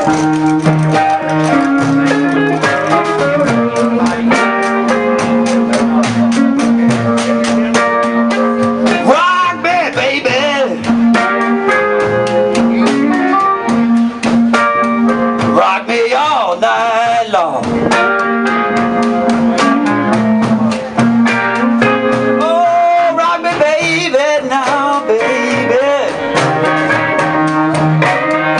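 Live blues band playing an instrumental passage: electric and acoustic guitars over a steady beat, with a lead guitar bending notes in several runs.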